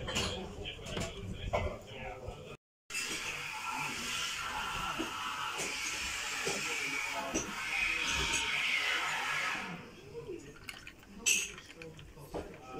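Sparkling water poured from a glass bottle into a drinking glass, a steady pouring and fizzing hiss that thins out about ten seconds in, over background chatter.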